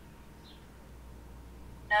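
Quiet room tone with a faint low hum and one faint short high chirp about half a second in; a voice starts speaking at the very end.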